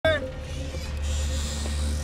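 Dark film soundtrack: a low rumbling drone under a steady held note, opening with a short falling tone.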